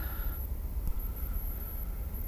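Steady low rumble with a faint hiss, with no distinct event standing out.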